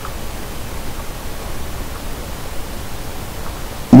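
Steady hiss of background noise on the recording, with a low hum underneath; a man's voice starts right at the very end.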